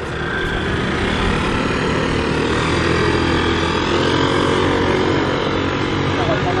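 An engine running steadily close by, swelling up over the first second and then holding an even note.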